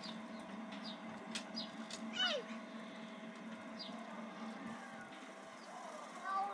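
A small child's short, high-pitched squeals, the clearest one about two seconds in sliding down in pitch, over a steady low hum that fades out about halfway through.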